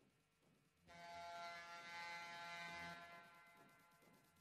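Faint electric buzzing tone that comes in about a second in, holds for about two seconds, then fades.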